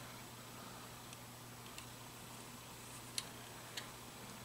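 Quiet, with a steady low hum and four faint light ticks spread across the few seconds, the third the loudest: small contacts of a soldering iron tip and wire against a motorcycle's ignition stator plate while a joint is being soldered.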